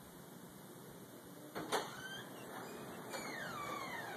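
Faint click of a door latch about a second and a half in, then a faint creak that slides down in pitch as a door swings open.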